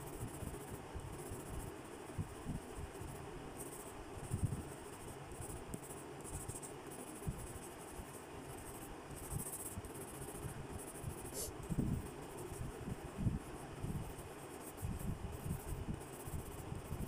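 Graphite pencil scratching on sketchbook paper in irregular shading strokes, with the paper shifting as the sketchbook is turned.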